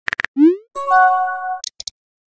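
Chat-app sound effects: a few quick keyboard tap clicks, then a short rising bubble-like pop as the message is sent, followed by a held chime of several steady notes and a few brief high ticks near the end.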